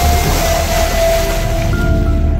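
A Mahindra Thar's tyres splashing through a shallow stream, heard as a loud rush of water noise. It plays under background music with a long held note and a steady bass.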